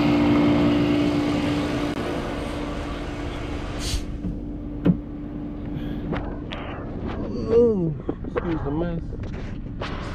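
BMW 540i's 4.4-litre V8 idling steadily while the freshly refilled cooling system bleeds, after a valley pan and oil separator replacement. The idle hum drops a little about two seconds in. A short sharp knock comes near four seconds, and a faint voice near the end.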